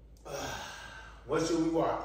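A person's wordless vocal sounds: a short breathy one falling in pitch, then about a second later a louder voiced one lasting under a second.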